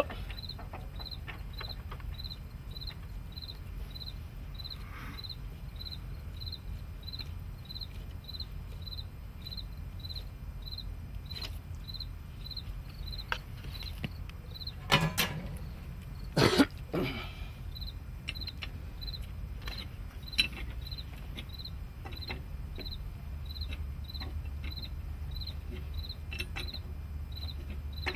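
Steady chirping of a cricket, about three chirps a second, over a low hum. A few sharp metal knocks and clicks come about halfway through as the spray rig's fluid screen fitting is worked back in and snugged up.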